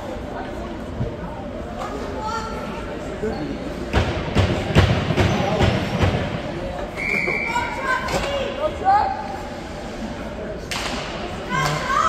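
Ice-rink ambience during a stoppage in play: indistinct voices echo in the arena, with a cluster of thuds about four seconds in and a brief high tone around the middle.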